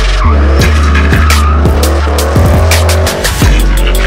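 Drift car sliding sideways, its engine revving up and down and its tyres squealing, mixed with drum-and-bass music with a heavy bass line and a steady beat.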